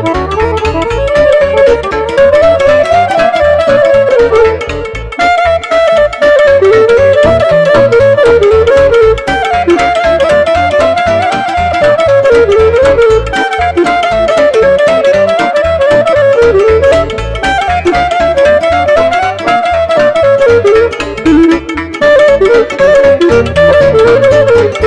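Romanian lăutărească music: a clarinet plays a winding melody that rises and falls in quick runs, over a steady rhythmic accompaniment of cimbalom, accordion and keyboard.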